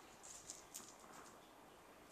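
Near silence, with a few faint clicks in the first second from small dice being rolled onto the gaming mat.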